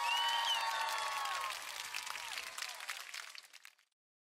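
Crowd applause with cheering voices, a canned sound effect laid over the closing shot, starting abruptly and fading out over nearly four seconds.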